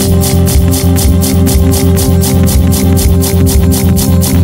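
Experimental pop music, instrumental at this point: a steady high ticking pulse about four times a second over a repeating low bass and held synth-like notes.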